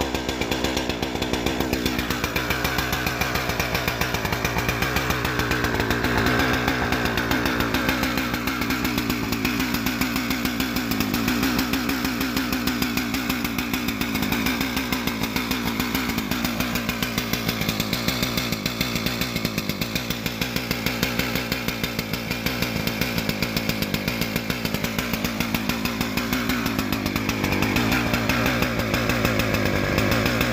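Husqvarna 359 two-stroke chainsaw engine idling steadily just after a cold start, still cold and warming up.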